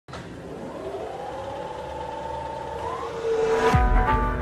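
Intro sound effect: a riser, a tone with hiss that slowly climbs in pitch and grows louder, ending in a deep falling boom shortly before the end as brass music comes in.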